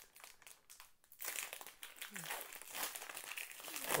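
Foil wrapper of a Panini Mosaic football card pack crinkling as hands open it and pull the cards out, the rustle getting fuller about a second in.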